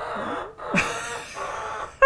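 A hen's short, raspy call, about three quarters of a second in, over a low background hiss.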